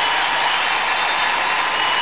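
Large arena crowd applauding at the end of a figure skating free skate: a steady, dense wash of clapping.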